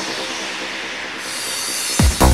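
Electronic dance music at a breakdown: the kick drum drops out, leaving a sustained high, hissing synth texture over a faint held chord. The high end opens up about a second in, and the kick drum comes back at the very end.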